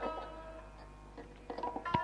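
Santoor played with its light hammers: a few notes ring and die away, then a quick run of fresh strikes near the end. These are the opening phrases of a dhun in raag Mishra Mand.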